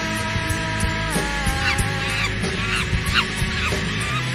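Monkey calls, several short high screeches that each sweep quickly downward, starting about one and a half seconds in. They sit over a rock backing track of held guitar chords and drums.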